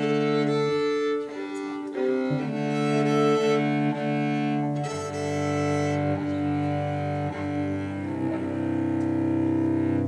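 Solo cello bowed in a slow phrase of long held notes, some sounded two at a time as double stops.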